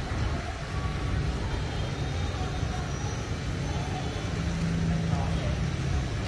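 Steady low rumble of city street traffic, with a low vehicle hum that swells briefly a little past the middle.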